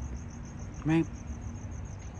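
Crickets chirping steadily in a high, evenly pulsed trill of several pulses a second.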